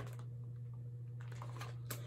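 Page of a hardcover picture book being turned: a few faint paper clicks and rustles, the clearest near the end, over a steady low hum.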